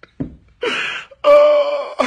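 A man sobbing: a short choked sob, a breathy cry about half a second in, then a long, high, held wail starting just past a second in, all through the hand pressed over his mouth.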